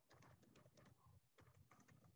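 Faint typing on a computer keyboard: two quick runs of key taps with a short pause about halfway, as a password is entered.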